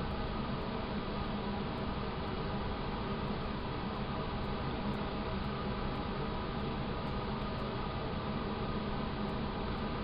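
Steady background hiss with a faint low hum, unchanging throughout: room tone or recording noise, with no distinct event.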